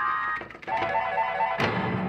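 Electronic jingle and quick repeated beeps from a coin-operated pinball slot machine's sound system. About a second and a half in, sharp clattering knocks join in.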